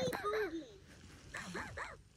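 LeapFrog My Pal talking plush puppy toy making a silly sound from its small speaker: two short bursts of high, sliding voice sounds, one at the start and one near the end.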